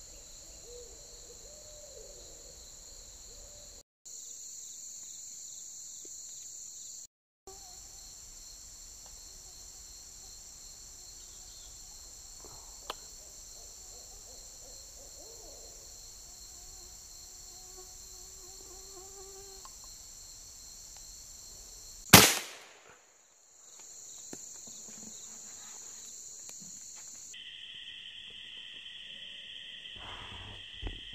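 A steady, high-pitched chorus of insects buzzing in the woods. A single loud rifle shot cracks about 22 seconds in and rings out briefly.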